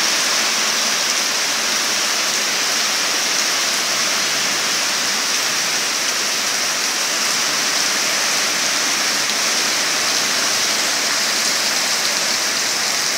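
Heavy typhoon rain pouring steadily onto flooded ground and standing water, a dense, even hiss with no let-up.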